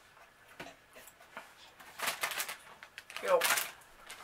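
Faint clicks and rustling, then a short breathy burst about two seconds in and a child's voice sliding down in pitch near the end, a wordless vocal reaction while chewing sour bubble gum.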